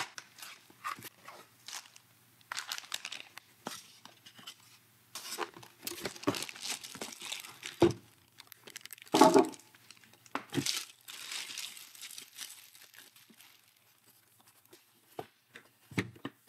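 Unboxing: a cardboard box being opened and a plastic bag crinkling and rustling as it is pulled off a small laser engraver. Scattered scrapes and taps of handling come and go, loudest in the middle.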